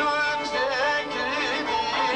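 Kurdish folk song: a man singing long, wavering, ornamented held notes over instrumental accompaniment.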